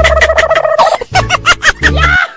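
A turkey-like gobble sound effect: a loud, rapid warbling run of about seven pulses a second, with a steady high tone held through the first second, cutting off abruptly at the end.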